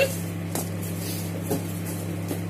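A steady low hum, with a couple of faint knocks as groceries are picked up and handled.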